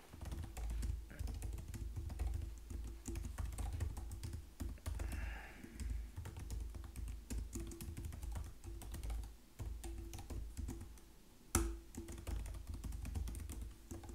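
Typing on a computer keyboard: a quick, uneven run of key clicks, with one louder keystroke about three quarters of the way through.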